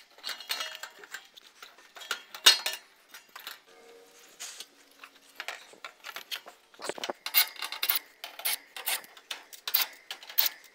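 Irregular metallic clinks, clatter and knocks of sheet-metal cabinet panels, screws and tools being handled on an HVAC package unit as it is taken apart.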